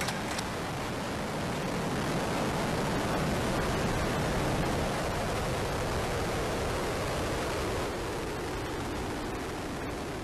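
Ares I-X rocket's solid rocket booster firing during its climb: a steady rushing roar of noise that swells slightly in the first few seconds and eases a little about eight seconds in.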